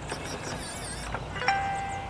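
Electronic keypad door lock on a travel trailer sounding its tones: a high, wavering chime in the first second, then one steady beep of under a second about one and a half seconds in.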